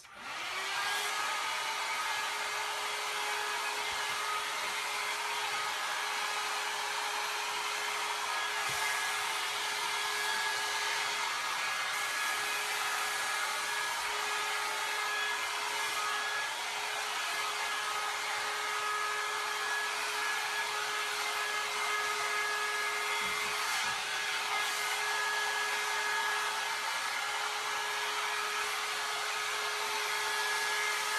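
John Frieda Salon Style 1.5-inch hot air brush switched on and blowing: a steady rush of air with a constant hum, starting right at the beginning and running without a break.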